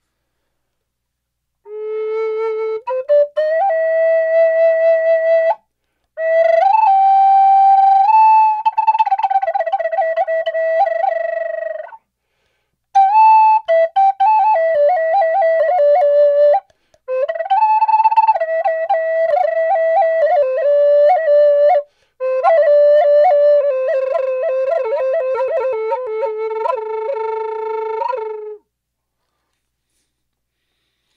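Solo wooden Native American style flute playing a slow melody in about five phrases with short breaks for breath, ending on a long low note. The notes are ornamented with the embellishments being taught: quick 'ticka-ticka' tonguing and flutter-tongued, rolled-R notes.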